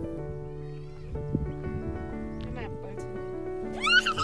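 Background music with sustained notes; near the end, a short high, wavering cry rises briefly over it and is the loudest thing heard.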